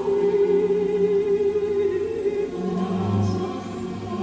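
Choral vocal music with a long held note that gives way to lower notes about two and a half seconds in.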